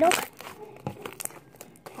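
White slime being squished and pulled apart by hand, giving scattered small crackling clicks and pops. A short spoken word at the very start is the loudest sound.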